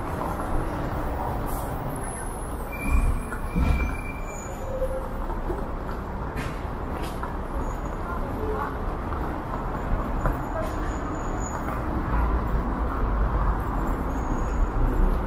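Busy city street sound: a steady rumble of road traffic with cars and a bus passing, and the voices of passers-by mixed in. A brief high squeal comes about three seconds in.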